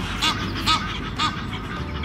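An Egyptian goose calling in short, harsh honks, about three in two seconds, over soft background music.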